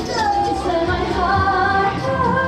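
A J-pop song performed live: young female voices singing into handheld microphones over the song's backing music, with long held notes that glide between pitches.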